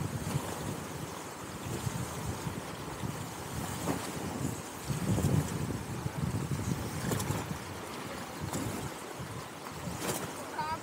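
Rushing whitewater of a fast mountain river heard from an inflatable raft running the rapids, with uneven low wind rumble on the microphone.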